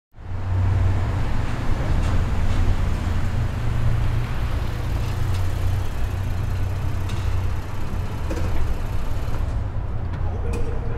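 Parked car's engine idling with a steady low rumble in a concrete parking garage; a door latch clicks near the end as a door begins to open.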